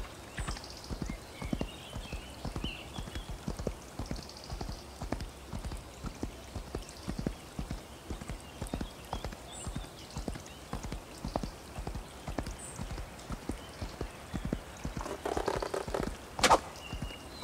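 A horse's hooves clip-clopping at an uneven pace, with a short louder rush of noise in the last second.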